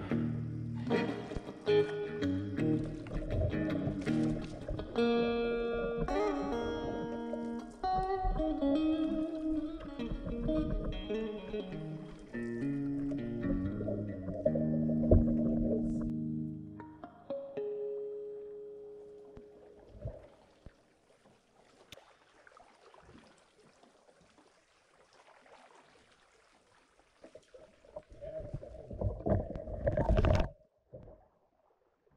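Blues played on a Fender Stratocaster electric guitar through a clean tube amp. The guitar fades out about two thirds of the way through, leaving faint water sounds of a canoe being paddled, with a few louder splashes near the end.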